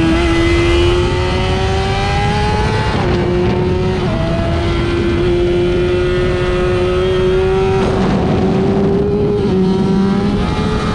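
Car engine running hard at track pace, its pitch climbing slowly, with short breaks about three and four seconds in and a change near the eighth second.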